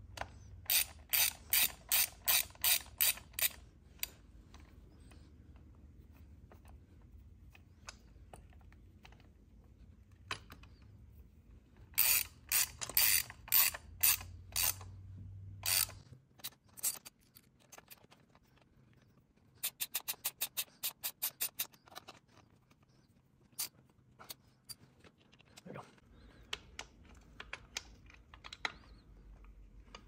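Small socket ratchet clicking as it runs backing-plate bolts down into the throttle body: three runs of quick, even clicks, the third faster, with a few single clicks in the gaps.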